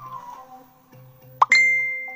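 A quick rising pop and then a bright bell-like ding that rings out and fades over about a second, over soft, steady background tones.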